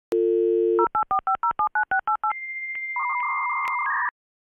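Dial-up modem connecting: a steady telephone dial tone, then a quick run of about eleven touch-tone digits. Then comes the answering modem's high steady tone, clicking about every half second, with a warbling handshake tone joining below it. It cuts off suddenly.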